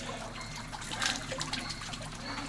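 Spring water trickling and dripping beside a metal ladle held over the basin.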